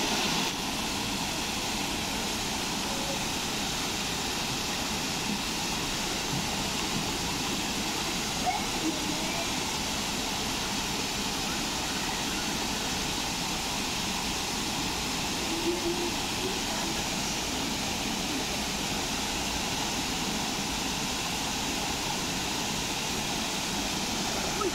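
Steady rushing of a small cascade of river water spilling over a low sandbag weir, unchanging throughout.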